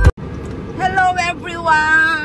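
A woman's voice inside a car over steady car-cabin road noise. Music cuts off abruptly at the very start.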